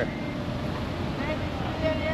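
Road traffic in slow, congested movement: vehicle engines running as a steady low rumble, with faint voices near the end.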